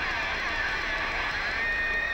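Electric guitar feedback ringing through the arena PA over crowd noise. A single steady high tone settles in near the end.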